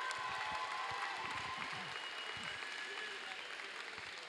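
Crowd applauding with scattered shouts in a large gymnasium arena. The applause holds steady and eases slightly toward the end.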